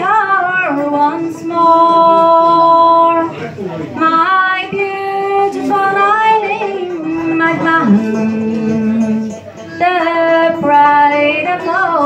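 A woman singing a slow Irish ballad into a microphone, solo voice holding long notes with small ornamental turns. There is a short pause for breath between phrases about three-quarters of the way through.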